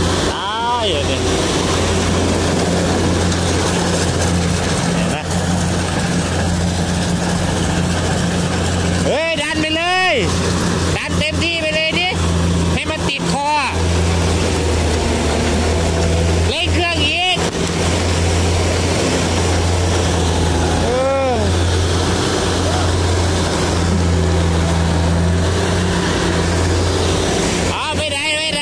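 Kubota combine harvester running steadily while cutting ripe rice: an unbroken low engine drone under the clatter of the machinery.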